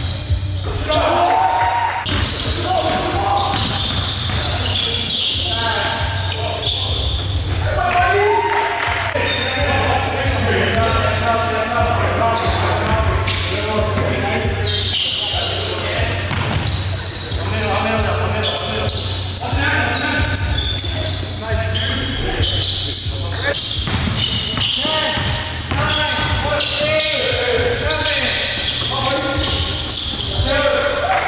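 Basketball game in a gym: the ball bouncing on the hardwood floor, with repeated short knocks and indistinct players' voices calling out, echoing in the hall over a steady low hum.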